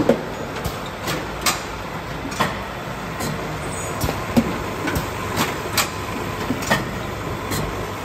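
Keck SK 11 packaging machine running: a steady mechanical hum from its motor and chain drive, with sharp metallic clacks at uneven intervals of about half a second to a second.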